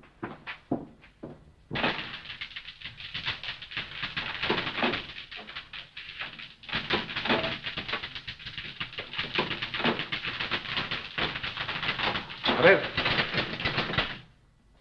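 Manual typewriters clattering fast and without a break, a dense run of key strikes that starts suddenly about two seconds in.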